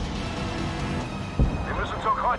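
A tank's high-explosive shell bursting on the target, a single sharp, heavy impact about one and a half seconds in, over a low rumble and film score. Shouting begins near the end.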